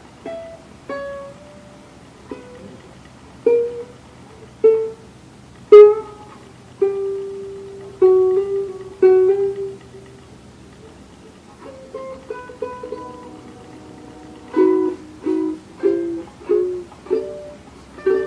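21-inch ukulele playing a scale of single plucked notes, some left ringing, stepping mostly downward in pitch, with a quicker run of notes near the end.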